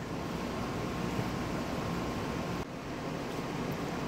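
Steady hum and hiss of indoor room noise, with a faint thin whine through the first part and a brief drop in level about two-thirds of the way through.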